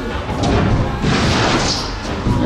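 A climber falling off a bouldering wall and landing at its foot: a sudden crash about half a second in, then about a second of noisy clatter, with music playing.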